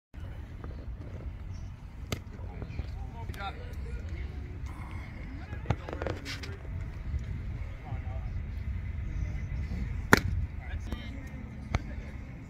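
Ballfield ambience with wind rumbling on the microphone and scattered voices. Several sharp pops stand out, one a little before six seconds and a much louder one about ten seconds in.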